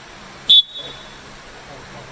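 A referee's whistle: one short, loud, high blast about half a second in.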